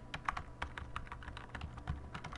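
Typing on a computer keyboard: an irregular run of key clicks, several a second.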